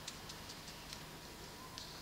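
Paintbrush tip dabbing paint through a paper doily onto paper: faint, soft ticks coming irregularly a few times a second.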